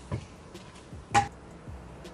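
A rattan chair frame knocking as it is carried and set down: a light knock just after the start, then one sharp, louder knock with a brief ring about a second in.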